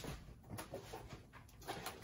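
Faint handling noises: soft rustles and light knocks as a diamond-painting kit box is picked up and handled.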